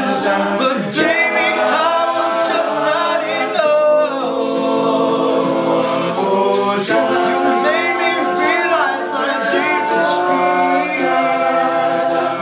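All-male a cappella group singing held chords in close harmony, a lead voice sliding up and down over them, with vocal-percussion clicks and hisses keeping time.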